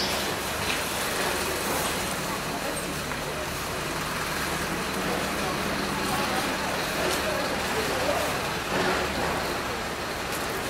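Steady city traffic noise, a constant hum of passing vehicles, with faint voices in the background.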